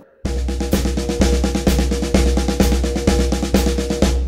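Drum kit played with sticks: steady sixteenth-note paradiddles (right-left-right-right, left-right-left-left), with a low bass-drum pulse about twice a second. The pattern starts about a quarter second in and stops at the end on a ringing final stroke.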